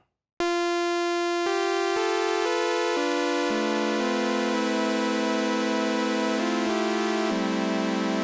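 Korg Mono/Poly four-oscillator analog synthesizer playing bright, sustained tones that start about half a second in. New notes step in every half second or so and are held over one another as chords.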